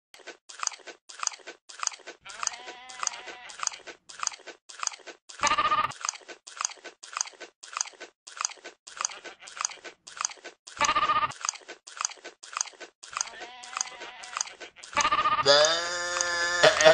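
A goat chewing with loud, regular crunches about twice a second, bleating briefly twice in the middle. Laughter comes in near the end.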